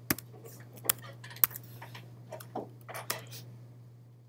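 Several sharp, irregularly spaced clicks of a laptop being worked, over a steady low hum.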